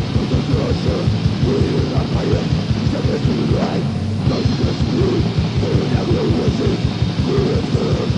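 Old-school death metal from a 1990 demo recording: heavily distorted guitars in a dense wall of noise over rapid, evenly spaced kick-drum strokes. The cymbal-and-guitar wash thins briefly about halfway through, then returns.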